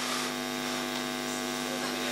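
Steady electrical mains hum and buzz through the hall's microphone and PA system, one unchanging droning tone with hiss above it.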